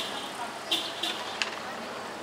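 City street ambience: a steady hiss of traffic, broken by a few short noises and a sharp click about a second and a half in.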